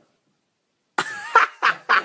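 About a second of dead silence, then a run of short, harsh bursts of a person's voice, about three a second.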